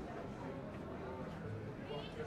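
Background chatter of passersby in a pedestrian street, voices talking indistinctly over a steady low hum of street ambience.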